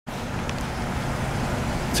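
Steady road traffic noise from cars driving along a city street.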